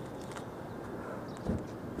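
Steady outdoor background noise, with one dull thump about one and a half seconds in.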